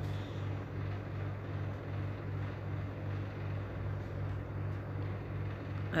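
A steady low machine hum, with faint stirring noise from a wooden spoon working melting butter caramel in a frying pan on a gas stove.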